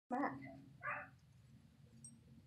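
A dog giving two short barks, the second just under a second after the first.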